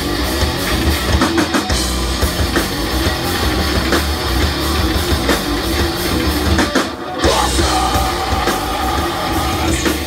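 Live rock band playing loud: distorted electric guitars, bass guitar and drum kit. About seven seconds in the band stops for a split second, then comes back in with held guitar notes.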